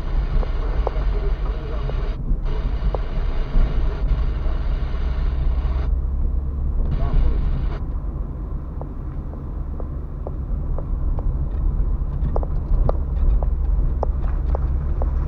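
Car cabin sound while driving slowly over a rough gravel and dirt road: a steady low rumble of tyres and engine, with scattered small clicks and rattles that grow more frequent in the second half.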